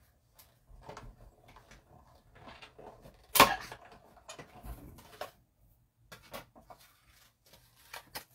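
Die-cutting machine feeding a die and cardstock through between its plates, heard as faint, irregular rubbing and clicking sounds, with one sharp clack about three and a half seconds in.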